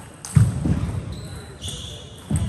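Busy table tennis hall: a loud low thud with voices about a third of a second in, then brief high squeaks toward the end.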